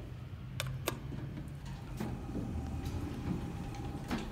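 Sharp clicks and light knocks of someone stepping into an elevator car: two clicks close together about half a second in and another at two seconds. A faint steady hum comes in a little before halfway.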